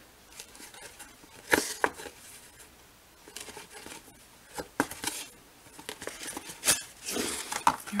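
Paper and a cloth strip being handled while hand-stitching: soft rustling and crinkling, with a handful of sharp clicks and taps scattered through it.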